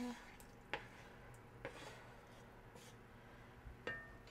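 Faint handling sounds of a wooden spoon scraping sliced onions off a ceramic plate into a pot, with a few light taps, one early and one near the end.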